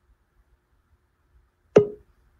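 Near silence, then a single sudden short pitched knock or pluck with a brief ring, near the end.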